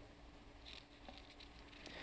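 Near silence: room tone with a faint steady hum and a soft rustle about two-thirds of a second in.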